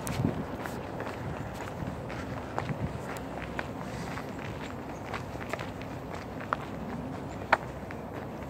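Footsteps of a person walking along a paved lane strewn with dry leaves, with scattered small ticks and clicks and one sharper click near the end.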